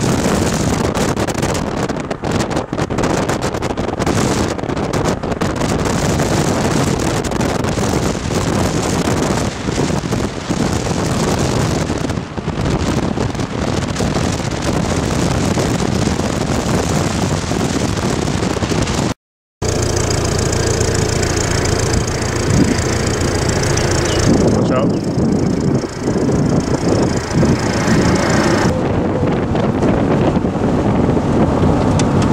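Wind buffeting the microphone together with road and engine noise of a car driving along, the camera held out of its window. About two-thirds of the way through the sound cuts out for an instant, and afterwards wind on the microphone goes on with a steady low hum under it.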